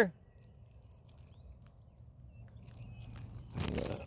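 Quiet open-air ambience with a faint short chirp. About three and a half seconds in, a sudden rush of rustling noise hits the handheld microphone.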